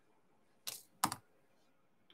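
Two short, sharp clicks of hard objects, about half a second apart, the second louder.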